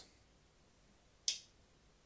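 A single sharp click about a second in as the Case Trapper pocket knife's blade snaps shut on its backspring; otherwise near silence.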